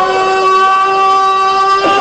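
A man's voice holding one long, steady sung note into a microphone during a chanted religious recitation. The note breaks off briefly near the end and is then taken up again at the same pitch.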